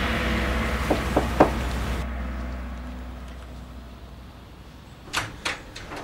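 The tail of a music cue fading away, then, near the end, a door handle and latch clicking twice as a wooden interior door is opened.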